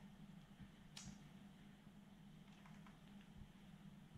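Near silence: faint room tone with a steady low hum and one faint click about a second in.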